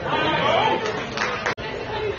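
People chattering, spectators' voices mixed together, with a sudden break in the sound about a second and a half in where the recording is cut.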